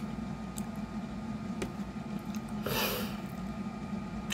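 Someone chewing a mouthful of fresh blueberries with the mouth closed: faint clicks and one short hiss about three seconds in, over a steady low hum.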